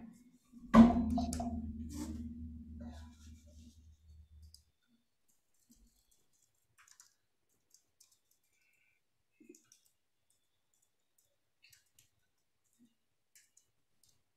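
A sharp knock about a second in, trailing off with a low hum over the next few seconds, then only faint scattered clicks.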